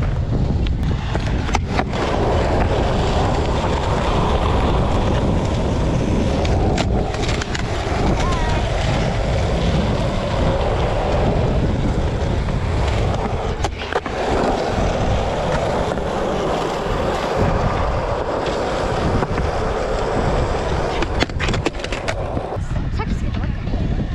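Skateboard wheels rolling on smooth concrete, a continuous gritty rumble, with a few sharp clacks from the board along the way.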